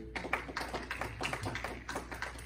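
A sustained acoustic guitar chord is cut off right at the start, followed by a run of quick, irregular sharp taps and clicks.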